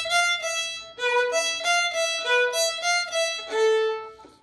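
Solo violin playing a short phrase of separate bowed notes, with a brief break about a second in and a longer, lower note near the end.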